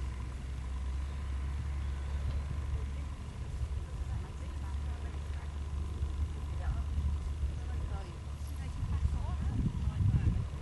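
Wind rumbling on the microphone, gusting louder near the end, with faint distant voices and a thin steady whine.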